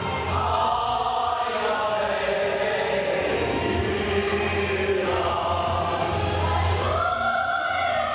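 Mixed choir of men and women singing together, with long held notes that slide slowly up and down in pitch.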